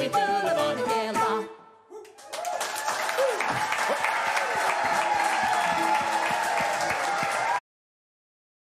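The last sung notes of a song with instruments end about a second and a half in. After a brief pause, the audience breaks into loud applause with a few cheering voices, and it cuts off abruptly near the end.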